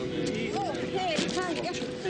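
Indistinct overlapping voices in a rescue commotion, with a steady tone underneath.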